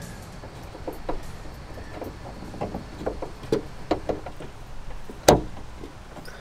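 Small metallic clicks and taps of a screwdriver working the end fitting of a car hatch's gas lift strut, with one much louder sharp click a little after five seconds in. The struts are being replaced because the worn ones let the lid drop.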